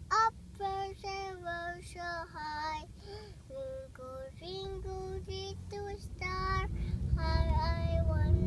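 A young boy singing a nursery-rhyme tune in a string of short held notes, inside a car. A low vehicle rumble builds under the singing from about halfway and is loudest near the end.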